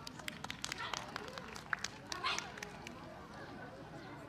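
Faint, irregular sharp taps and claps, thinning out after about two and a half seconds, with low voices in the background.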